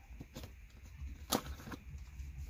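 Handling clicks of a fire steel's metal snap clip being unhooked from a backpack strap, with one sharp click about a second and a half in.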